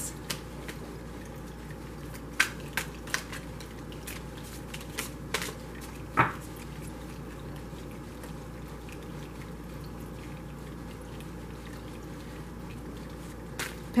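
A deck of tarot cards being shuffled by hand, giving a handful of soft clicks and snaps of card on card, mostly in the first six seconds and loudest about six seconds in, over a steady low hum.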